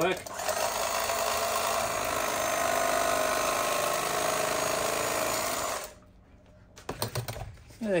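An old electric carving knife running, its motor-driven blades sawing through a foam pool noodle with a steady buzz that stops suddenly about six seconds in. A few light knocks follow.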